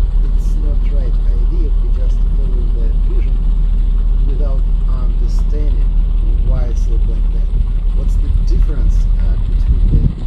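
A boat's engine running with a steady low rumble, with people's voices talking over it.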